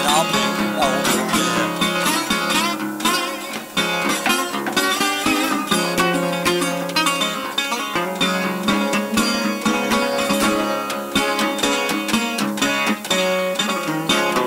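Metal-bodied resonator guitar played solo, a run of quick picked notes over sustained low bass notes.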